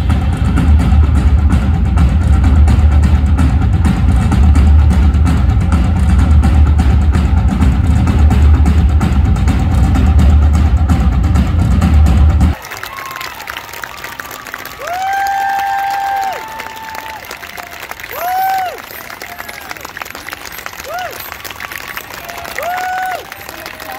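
Loud live stage music with drums and a heavy bass beat, which stops abruptly about halfway through. It gives way to audience applause and cheering with several long whooping shouts.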